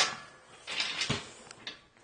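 Metal loading ramp being handled and shifted: a short rasp followed by a couple of light knocks.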